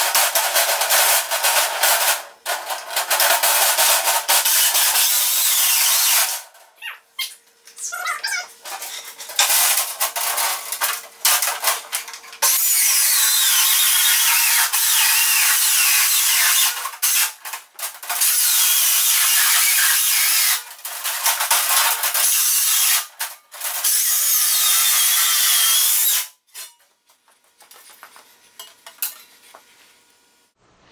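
Circular saw cutting metal diamond plate: a loud, high-pitched screech whose pitch wavers as the blade bites, running in several long passes broken by short pauses, and stopping near the end.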